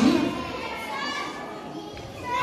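Children's voices from a seated audience in a large hall, chattering and calling out in reply to a question, with the last of a man's amplified voice at the very start.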